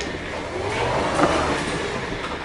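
Powered wheelchair driving along: a steady motor whir and wheel rumble, heard close up through a camera mounted on the chair.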